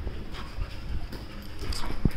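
Two German Shepherds play-fighting: a low, rough scuffle of bodies and breathing, with a few faint clicks.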